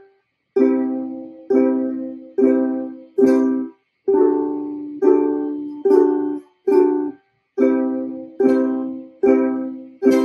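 Ukulele chords strummed slowly, one strum a little under each second, each chord left to ring and fade before the next, with a few brief pauses between them.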